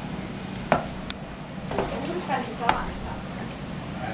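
Footsteps on stone steps, a sharp step about once a second, the loudest near the start, over a steady low hum. Faint distant voices come in around the middle.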